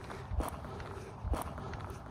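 Two footsteps on dry, gravelly desert dirt, about a second apart, over a faint steady outdoor background.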